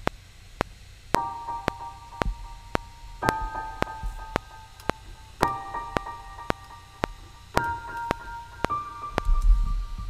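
Logic Pro X 'Ghost Piano' software instrument playing sustained minor chords in G minor, a new chord about every two seconds (four in all), over a metronome clicking just under twice a second at 112 BPM while the part is recorded in live from a MIDI keyboard. A low rumble comes in near the end.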